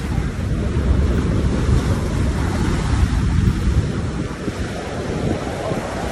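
Wind buffeting the microphone in an uneven low rumble, over the wash of surf breaking on a beach.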